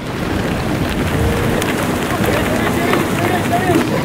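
A large Cape fur seal colony calling: many overlapping bleating cries that rise and fall in pitch, over a steady dense rush of noise with some wind on the microphone.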